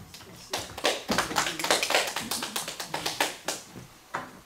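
Brief scattered hand clapping from a few people. About twenty sharp, uneven claps start about half a second in and die away near the end.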